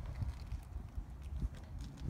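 Low rumble with a few faint knocks, the handling noise of a phone held in the hand and moved about while filming.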